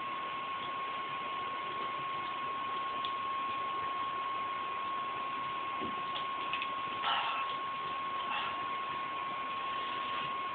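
Steady room noise: an even hiss with a constant high-pitched whine, and a couple of faint brief sounds about seven and eight seconds in.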